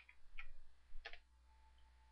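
Three faint, short clicks from a computer keyboard and mouse being worked, the last about a second in the strongest, over a faint low hum.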